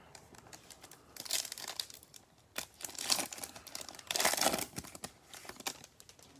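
A foil trading-card pack of 2020 Panini Select football cards being torn open and crinkled by gloved hands, in three bursts of crinkling over a few seconds, with small clicks from handling.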